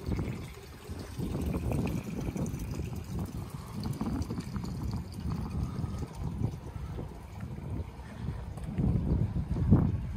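Uneven low rumble of outdoor ambience beside a moored yacht: wind buffeting the microphone and water moving around the hull, a little louder near the end.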